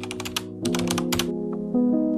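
Keyboard-typing sound effect, a quick run of clicks that stops after about a second and a half, over background music with held notes.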